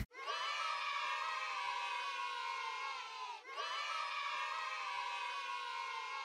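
A group of children shouting and cheering together. The cheer comes in two stretches of about three seconds each, with a brief dip between them, and the second stretch is much like the first.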